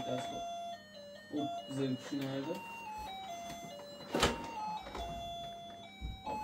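Tinny electronic tune from a baby walker's toy play panel, a melody of stepped beeping notes, with short voice-like phrases about a second and a half in and a sharp knock just after four seconds.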